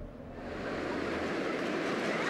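Surf washing in over a beach, the wave noise fading up about half a second in and staying steady.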